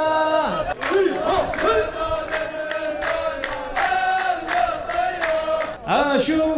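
A group of men chanting a line of verse together in a held, sung melody, with steady rhythmic hand claps about three a second.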